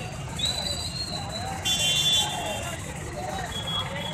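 Busy street ambience: a steady low traffic rumble under background voices, with high-pitched steady tones, the loudest about two seconds in.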